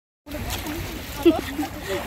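Sea water lapping and splashing at the shore under a woman's laugh and a greeting, coming in after a moment of silence.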